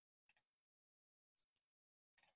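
Near silence: room tone with two faint short clicks, one about a third of a second in and one about a second and a half in.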